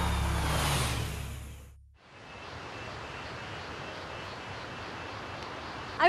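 Background music with deep bass tones and a rising swish fades out in the first two seconds. A steady rushing roar of the Kaveri River's waterfall at Shivanasamudra follows.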